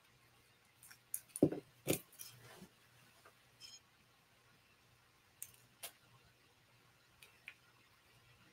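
Scattered light clicks and taps of a nail-art pick-up tool against a triangle tray of tiny beads as beads are picked up, the two loudest knocks coming about one and a half to two seconds in.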